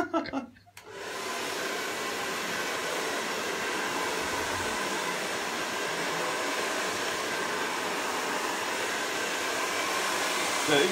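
Handheld hair dryer switched on about a second in, then running steadily as it blow-dries hair.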